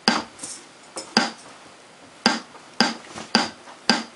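About seven sharp, unpitched clicks and knocks at uneven intervals over a low hiss, from an electric guitar being handled with its strings muted before playing.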